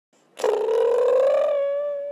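Intro sound effect for an animated logo: a single held, buzzy note that begins with a flutter, then smooths out and rises slightly in pitch, starting about half a second in.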